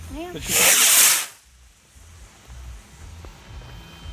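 A firework going off on the ground with one loud hiss lasting under a second, starting about half a second in and cutting off suddenly.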